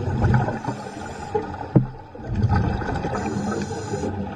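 Muffled underwater water noise with gurgling surges, one at the start and another just past halfway, and a single sharp knock just before the middle.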